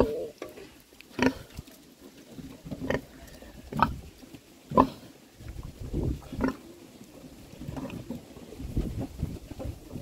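A sow and her piglets grunting in a pen, as a scatter of short separate sounds.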